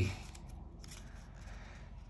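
Faint rustling of paper as hands rest on and shift over the open pages of a comic book, with a soft click near the start, in a quiet room.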